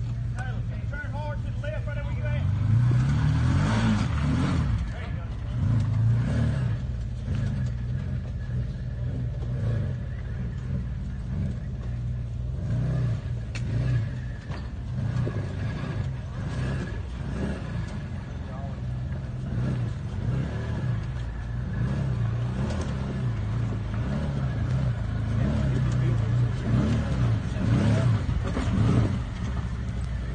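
Side-by-side UTV engine running at low revs and revving up in repeated short bursts as it crawls up over rocks, loudest near the end.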